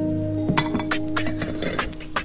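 Dishes clinking, a quick irregular series of sharp clinks starting about half a second in, over background music with held tones.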